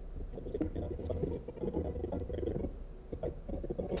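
A video's soundtrack playing back faintly through computer speakers from an editing timeline, heard low and muffled with little above the bass.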